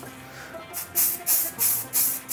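Background music with a shaker keeping a quick, even beat, about three strokes a second, coming in near the middle.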